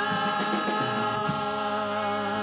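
Live gospel worship music: the singers and band hold one long chord.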